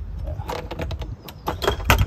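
Sharp metallic clicks and knocks as the latch of an Alu-Cab Hercules pop-top roof is worked open by hand, the loudest near the end, over a steady low rumble.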